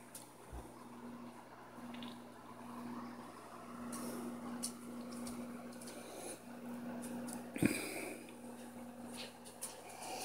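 Steady low hum of running aquarium equipment over faint hiss, swelling and fading slightly. Faint clicks of the camera being handled, and one sharper knock about three quarters of the way through.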